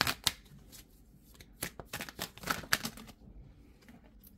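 A deck of tarot cards being shuffled by hand, the cards flicking and clicking against each other in short runs at the start and again around the middle, going quiet about three seconds in.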